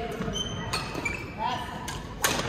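Badminton rally: sharp racket hits on the shuttlecock, about three in quick succession under a second apart, with short high squeaks of court shoes on the floor, echoing in a large sports hall.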